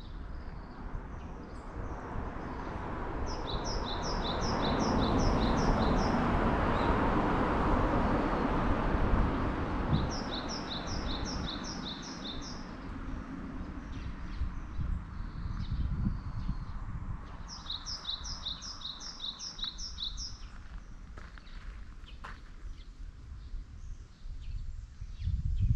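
A songbird calling in three runs of about seven quick, evenly spaced high chirps. Under it, a rushing noise swells over the first half and fades, with a low rumble throughout.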